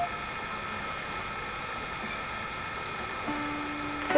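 A pause in acoustic guitar playing: steady background hiss, then a faint low held note beginning near the end.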